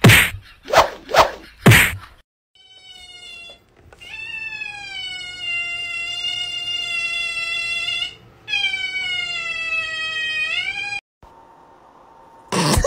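A cat yowling in two long, drawn-out calls, the second bending up in pitch at its end. Before them, in the first two seconds, come four short, loud, noisy bursts.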